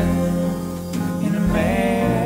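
Live folk-Americana band music: two acoustic guitars played together with a bowed violin, in a passage between sung lines.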